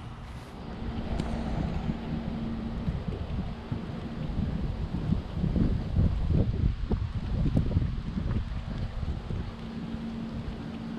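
Wind buffeting the camera microphone in gusts, a low rumble that swells toward the middle and eases off near the end.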